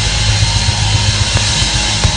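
Live band playing loudly, with held bass notes under a wash of cymbals and a few scattered drum hits.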